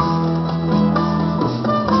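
A live band of guitars and other plucked strings plays an instrumental passage between a trovador's sung verse lines, with steady held chords and no voice.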